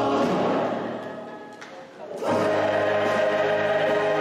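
A recorded choir singing a sacred choral piece. One phrase dies away, and a new phrase enters full at once a little after two seconds in.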